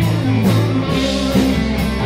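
Live rock band playing loudly: two electric guitars, electric bass and drum kit, with cymbal hits recurring about every half second.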